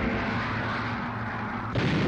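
Battle sound of explosions and gunfire, a continuous dense din, with a sudden louder blast near the end.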